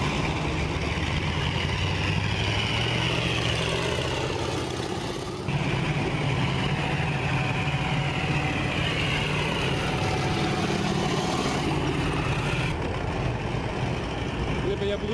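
Heavy military vehicle engine running steadily, with a high whine over it that slowly falls in pitch. The sound breaks off abruptly about five and a half seconds in and starts again at once.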